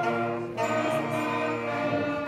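Sixth-grade concert band of woodwinds and brass playing slow, sustained chords, moving to a new chord about half a second in.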